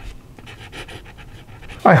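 Fountain pen nib writing on paper: a run of faint, short scratching strokes as a word is written in cursive. A man's voice starts near the end.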